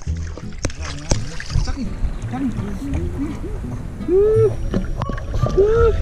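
Water sloshing and splashing around a small dog as it is set down and paddles in shallow sea water, with short voiced 'ooh'-like calls from the people, two of them louder near the end.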